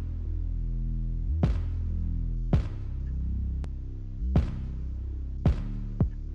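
Playback of the synth bass in an electronic pop mix: deep sustained bass notes, with a sharp drum hit about every second.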